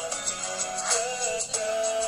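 Singers performing an Indonesian pop song into microphones over a backing track with a steady beat; the voice holds and bends its notes through the melody.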